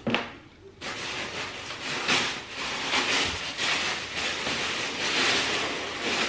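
Paper packaging inside a cardboard box rustling and crinkling as it is handled and pulled open, starting just under a second in after a short click.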